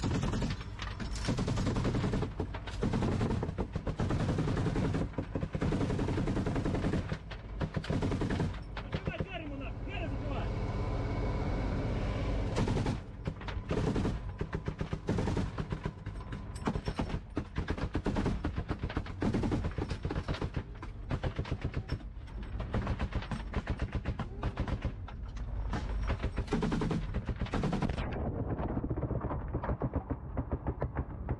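Bursts of machine-gun fire from the Humvee's roof turret, heard from inside the vehicle's cabin, with short breaks between bursts and a lull of a few seconds about ten seconds in. The firing stops about two seconds before the end.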